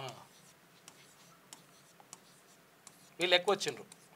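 Stylus writing on an interactive whiteboard screen: faint scattered taps and short scratches as figures are written. A man's voice speaks briefly near the end.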